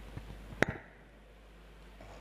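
A sharp click about half a second in, with a smaller click just after, over faint room noise and a low hum that drops away at the click.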